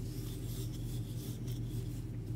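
Yarn drawing over a 6 mm wooden crochet hook as single crochet stitches are worked: soft scratchy rubbing in short strokes, over a steady low hum.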